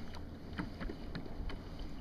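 Hobie pedal kayak on open water: low wind and water noise, with light irregular knocks and clicks from the boat, about five of them in two seconds.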